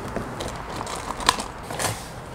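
Rummaging through a plastic storage bin: objects shifting and rustling, with a couple of sharp clicks about a second in and near the end.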